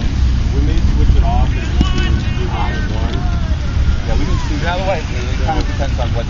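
Wind rumbling on the microphone, with voices calling out now and then across the field.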